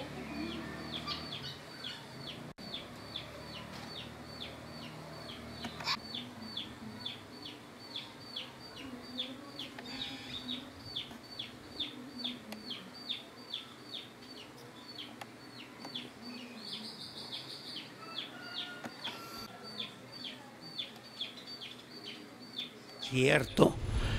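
A bird calling steadily: short, high, downward-sliding peeps repeated evenly about three times a second.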